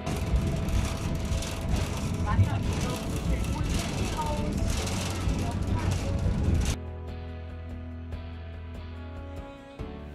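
Kreuzeckbahn funicular car running up its steep track: a loud, dense mechanical running noise over background music. The ride noise cuts off suddenly about two thirds of the way in, leaving only the music.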